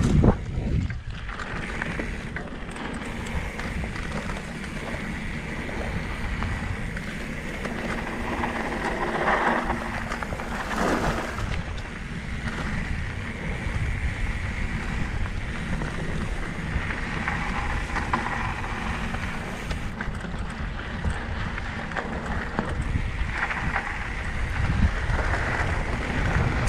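Mountain bike rolling along a dirt singletrack: wind rushing over the camera microphone, with the rumble and rattle of the tyres and bike over the trail. A loud knock comes right at the start.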